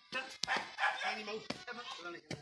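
A dog barking, mixed with a person's voice.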